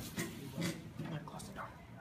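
A quiet pause in a classroom: faint background voices with a few soft clicks.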